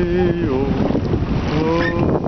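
Wordless chanting: a voice holding long notes that slide up and down, a pause, then it starts again near the end. Wind buffets the microphone underneath.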